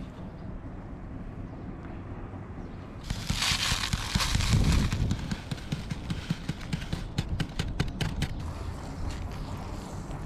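Ground coffee being shaken out of a paper coffee bag into a paper filter cone, with the bag rustling loudly for a couple of seconds. This is followed by a run of quick crinkles and clicks as the paper is handled.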